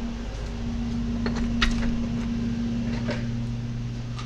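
A sliding glass door being opened and shut, a few light clicks and knocks over a steady hum. A second, lower hum joins about three seconds in.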